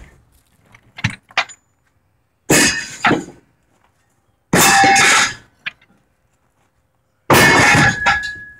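Heavy scrap steel parts (shafts, rods, gears) thrown by hand, landing on other metal with three loud crashes and clangs about two seconds apart. There are a few light clinks before the first crash, and the last crash leaves a short ringing tone.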